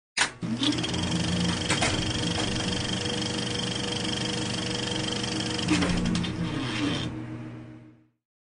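Intro sound for a video opening: a sharp hit, then a steady bed of sustained tones with a fast, even ticking running through it and a few more hits, fading out in the last second or so.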